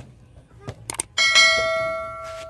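A few quick clicks, then about a second in a struck bell chime rings out and slowly fades: the click-and-bell sound effect of a subscribe-button animation.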